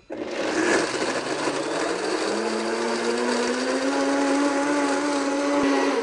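Countertop blender pureeing raw cashews and water into cashew milk. The motor comes on at once, its pitch climbs over the first couple of seconds, then it runs steadily until it stops near the end.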